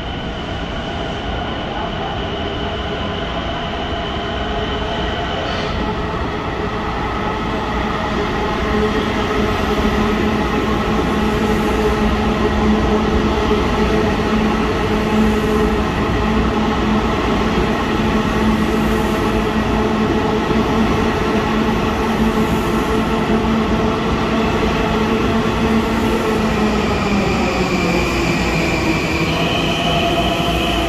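Long Island Rail Road electric train pulling in along an underground station platform. A steady whine of several tones over the rumble of the wheels grows louder over the first ten seconds or so. About three seconds before the end the pitch slides down as the train slows to a stop, and a new high tone starts just before the end.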